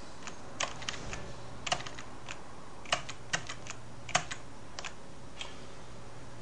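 Computer keyboard keys being typed in short irregular clicks, about a dozen spread over a few seconds, entering numbers into a calculator program, over a faint steady low hum.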